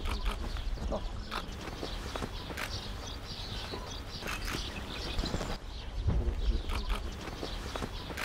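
Low-level outdoor background noise with a steady low rumble and scattered light clicks and knocks.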